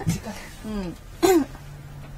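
A woman clearing her throat about a second in, among short murmured voice sounds.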